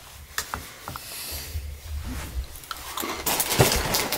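Crackers being bitten and chewed: scattered small crunches and clicks, a little denser near the end.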